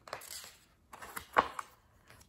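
Pages of a picture book being turned by hand: faint paper rustling and handling, with one sharper click about one and a half seconds in.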